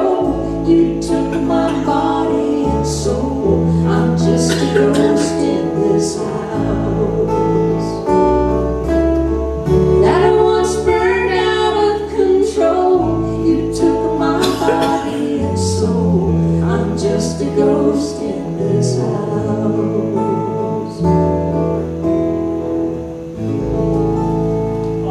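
Live acoustic band performance: two acoustic guitars playing chords over an electric bass guitar, with a singing voice carrying the melody.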